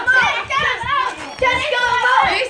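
Loud children's voices talking and calling out over one another.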